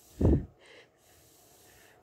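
A person's single short, loud breath through the nose, a snort-like exhale, about a quarter second in.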